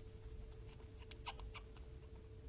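Quiet room with a steady faint hum, and a few faint short clicks and squeaks about a second in.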